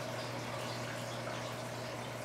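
Steady, low background noise with a faint constant hum: room tone, with no distinct event.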